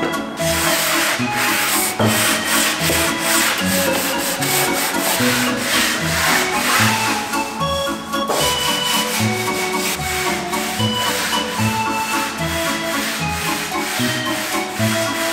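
Hand sanding of painted wooden boards with a sanding block: repeated rubbing strokes, heard over background music with a steady beat.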